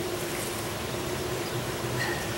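Steady mechanical hum with a constant tone, unchanging throughout.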